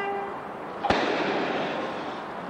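Starter's pistol fired once about a second in: a single sharp crack with a short echo, the signal that starts a sprint race from the blocks.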